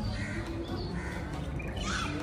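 A few short bird calls over a steady low hum.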